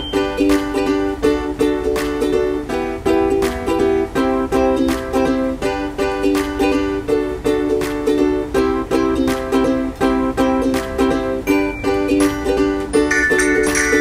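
Background music: a bright, plucked ukulele-style tune with a steady beat.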